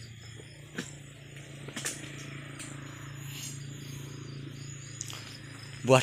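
A few sharp knocks, about one second in, two seconds in and near the end, of a dodos pole chisel striking the base of an oil palm fruit bunch, over a steady low hum.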